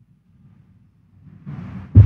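Faint low rumble of room noise, with a hiss coming up about one and a half seconds in, ending in one sharp, loud thump.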